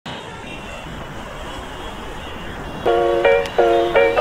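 Steady city traffic hum, then about three seconds in, music starts with short, bright chord notes that change every few tenths of a second.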